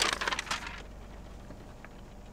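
Paper crinkling and rustling in a short burst that dies away within the first second.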